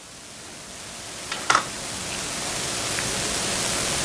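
Steady background hiss that grows gradually louder, with a single light click about a second and a half in.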